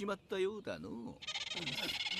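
A character's voice from the anime soundtrack, then, from just over a second in, a high, rapidly pulsing sound effect.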